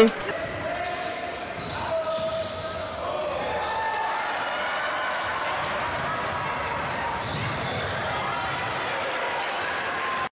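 Basketball game sound in a gym: the ball bouncing on the hardwood court with faint voices of players and spectators. It gets a little louder about three seconds in.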